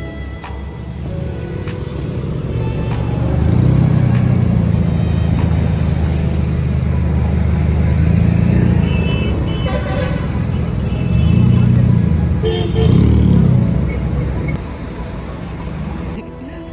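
A car engine running close by, a low steady rumble that grows louder about three seconds in and drops back near the end, with background music over it.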